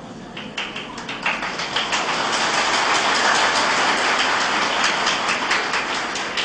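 Audience applause: many hands clapping in a dense, irregular patter that swells over the first couple of seconds, holds, and thins out near the end.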